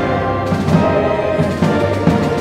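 Orchestra playing live, a loud, full passage with many instruments sounding together.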